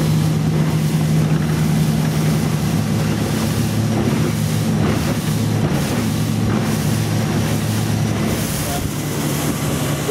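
Glastron Bayflite V174 speedboat converted to a DC electric drive, running at full throttle about 47 km/h: a steady low hum from the electric motor and sterndrive over the rush of water and wind against the hull.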